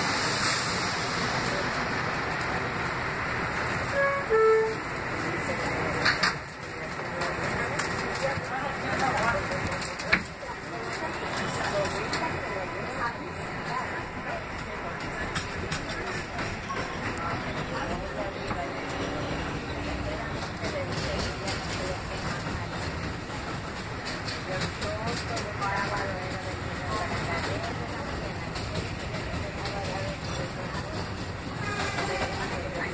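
Kawasaki R188 subway car running on elevated track after leaving a station, with a steady noise of wheels on rail and motors. A short tone sounds about four seconds in, and there is a sharp knock about ten seconds in.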